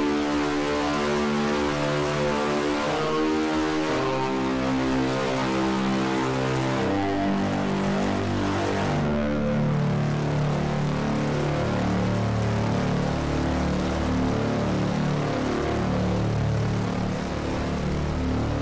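Dark, eerie sampled synth patch ('Paranormal' preset in FrozenPlain's Mirage sampler) holding sustained chords with a gritty, noisy layer over them, the chords shifting about four and seven seconds in and settling lower after that.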